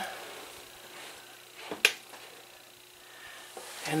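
Quiet room tone with a faint steady hum, broken by a single sharp click about two seconds in.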